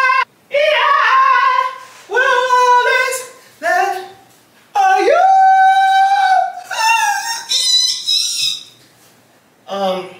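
A young woman singing loudly without accompaniment, in high, drawn-out phrases with short breaks between them and one long held note about halfway through. The small room gives the voice some echo.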